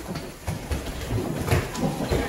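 A jumble of thuds and scuffs from a game of human table football: players' feet shuffling and stamping on the floor and the ball being kicked, with a sharper knock about one and a half seconds in.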